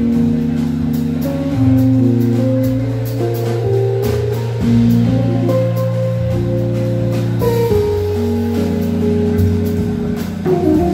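Jazz quartet playing live: hollow-body electric guitar, Nord keyboard, double bass and drum kit, with long held chords over a walking bass and light cymbal work.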